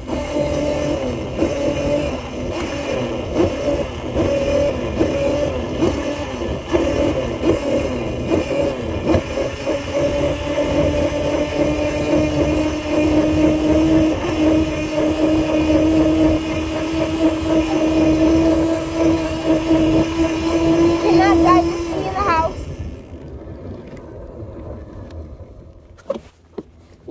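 Electric motor of a battery-powered ride-on vehicle whining at a steady pitch over rumbling wheel and wind noise while driving; the whine stops about 22 seconds in and it goes quieter.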